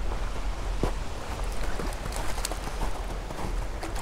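Small mountain creek running steadily, with a low rumble underneath and a few faint short ticks as a trout is played on a tenkara line.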